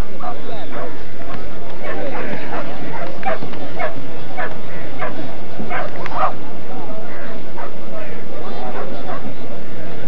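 Dogs barking and yipping in short repeated calls over the chatter of a crowd.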